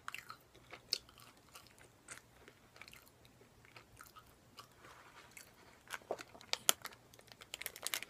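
Close-miked chewing of a breaded, deep-fried menchi katsu, with soft crunches and wet clicks from the mouth. The crunches are sparse at first and come faster and louder in the last two seconds.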